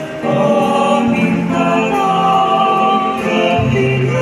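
Small mixed choir of men's and women's voices singing a hymn in parts, with long held notes. A low held note comes in about three and a half seconds in.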